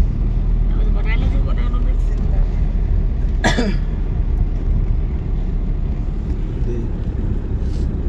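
Steady low rumble of a moving car heard from inside the cabin: engine and road noise. A person's short laugh cuts through about three and a half seconds in.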